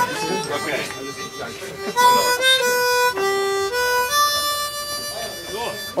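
Harmonica playing a slow tune of long held single notes, beginning about two seconds in: a few notes stepping down to a low one and back up, then one long held note near the end. Voices chatter quietly before the playing starts.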